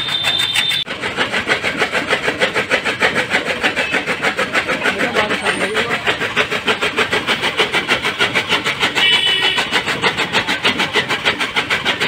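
An engine-driven machine running with a fast, even beat of about five or six pulses a second.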